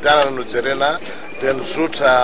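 A man speaking in a steady run of talk: speech only.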